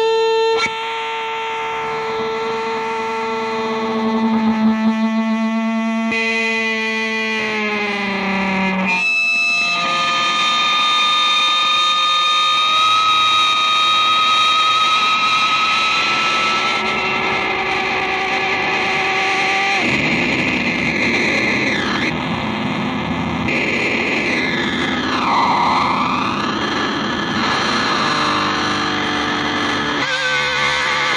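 Solo electric guitar improvisation through distortion and effects. Sustained droning tones slide down in pitch about eight or nine seconds in, then give way to a dense, noisy texture with swooping sweeps in pitch later on.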